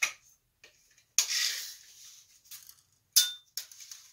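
Sharp handling clicks and a short rasping rush as a steel tape measure is pulled out against a glass chandelier, with a sharp clink that rings briefly about three seconds in.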